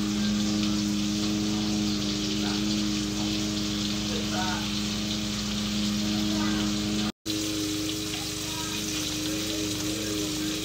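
Ham steaks sizzling in butter in a frying pan: a steady hiss, under a steady low hum and faint background speech. The sound drops out for a moment about seven seconds in.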